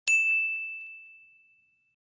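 Notification-bell sound effect of a subscribe-button animation: a single bright ding that rings out and fades away over about a second and a half.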